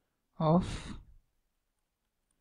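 A single spoken word, "of", about half a second in, trailing off into a breathy exhale like a sigh; silence otherwise.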